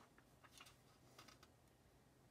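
Near silence: room tone with a few faint, short clicks in small groups.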